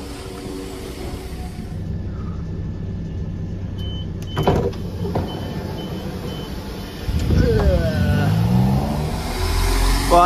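Class 172 diesel multiple unit's underfloor engine running steadily at a platform, with a knock about halfway through and a run of short high beeps. From about seven seconds in, the engine note rises in pitch and grows louder as the unit powers away.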